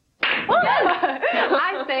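Speech: a woman talking in a lively voice. It starts abruptly after a fraction of a second of silence.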